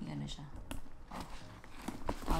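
A leather tote bag being handled: a few small clicks and taps from its metal clasp and hardware, with one sharper click about two thirds of a second in.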